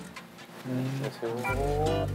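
A long held note that rises slightly in pitch, starting about half a second in, over background music whose bass comes in near the end.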